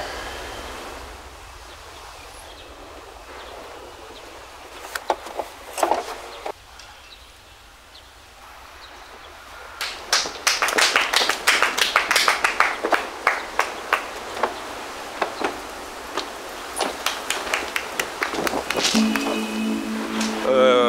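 Background music under a hand-to-hand martial-arts sparring bout. A few sharp hits come about five seconds in, then a fast run of punch-and-block impacts from about halfway until near the end.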